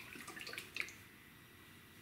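A few small, faint clicks and taps in the first second as a glass hot sauce bottle is turned and handled in the hand.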